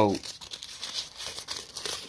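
Crinkling, rustling handling noise: a dense run of small, irregular crackles.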